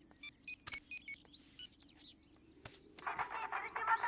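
Mobile phone keypad beeps as a number is dialled: a quick run of short, high beeps in the first second or so.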